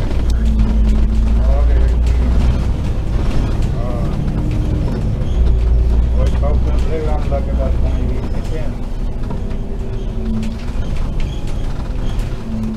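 Double-decker bus engine and drivetrain heard from on board while the bus is under way: a deep drone with a steady hum above it, swelling twice as the bus accelerates, with passengers' voices in the background.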